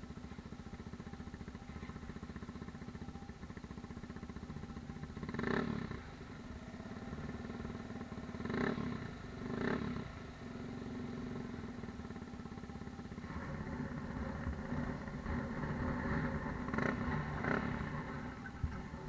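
Dirt bike engine idling with a steady fast pulse, blipped on the throttle in short surges three times in the first ten seconds, then revved more unevenly and louder in the last few seconds.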